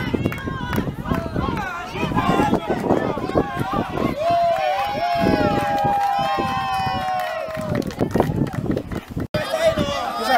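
Several people shouting and talking over one another outdoors, with one voice holding a long call for several seconds midway; the sound drops out for an instant near the end.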